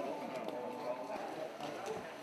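Indistinct voices of several people talking, with a few light clicks or taps in among them.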